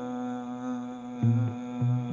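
Live music: a guitar holds a long ringing note, then low notes are plucked in from about a second in.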